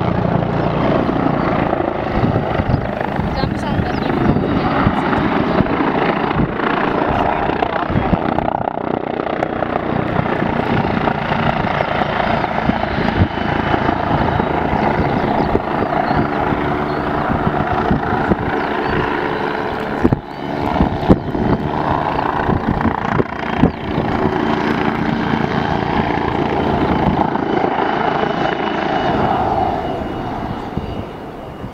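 Bölkow Bo 105 helicopter flying a display pass, its rotor beating rhythmically over the steady turbine noise. A few sharp knocks come about two-thirds of the way through.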